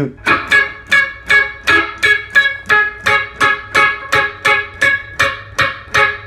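Ibanez hollow-body electric guitar playing a reggae rhythm: the same chord chopped short over and over, about two and a half strokes a second, each stroke muted so it stops almost at once.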